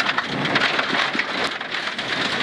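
Rally car at speed heard from inside the cabin as it comes off gravel onto tarmac: a dense, rain-like clatter of loose stones thrown against the underbody and wheel arches, over the running engine.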